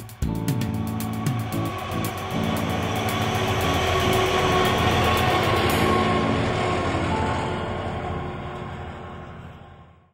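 Large farm tractor driving along the road, its engine and rattle growing to a peak about halfway through and then fading away, with music underneath.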